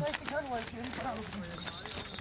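Men's voices calling out over running footsteps on a dirt path.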